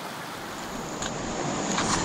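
Water rushing over the rocks of a mountain creek, with wind rumbling on the microphone. A thin steady high tone comes in about half a second in.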